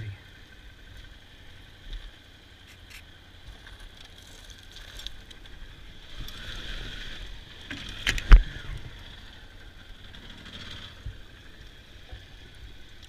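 Adventure motorcycle riding slowly over a gravel and dirt trail, a low steady engine and road rumble. A small knock comes about two seconds in, and a much louder sharp knock a little after eight seconds.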